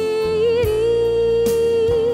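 Indonesian 1990s pop ballad playing: a long held melody note that wavers in vibrato over a slow accompaniment with a few drum hits.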